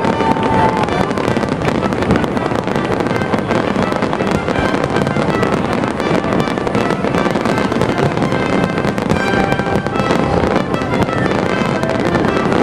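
A dense, unbroken barrage of aerial fireworks: rapid overlapping bangs and crackling shells going off one on top of another, with no pause.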